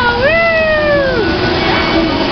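A high-pitched voice calls out once, a long drawn-out note that rises and then slowly falls, over steady background noise.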